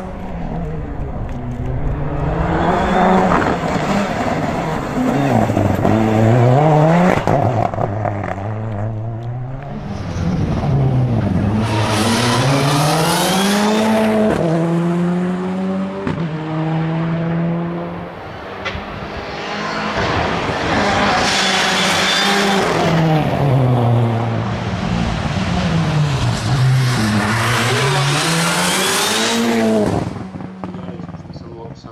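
Škoda Fabia rally car's engine driven hard, its note climbing and dropping back again and again as it accelerates and slows through the stage.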